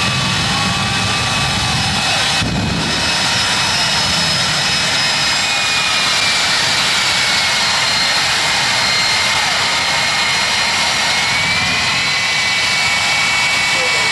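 Jet dragster turbine engines running at the starting line: a loud, steady roar with a high turbine whine that dips slightly in pitch and rises again.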